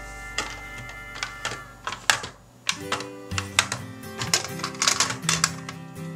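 Toy buses clicking and clattering as a hand pushes them together and sets them down in a row on a hard surface, a quick run of small knocks that thickens about halfway through. Background music with steady tones plays underneath.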